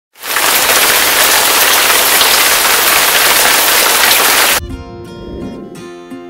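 Steady heavy rain falling, loud, cutting off suddenly about four and a half seconds in as music begins.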